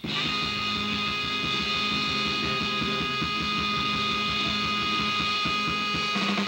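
A live band playing, with electric guitar and held notes over a quick, steady drum beat.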